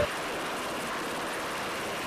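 MH-60S Sea Hawk helicopter hovering, its rotor and twin turboshaft engines heard as a steady rushing noise.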